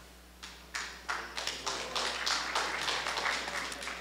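Audience clapping: a few claps about half a second in, filling out into steady applause.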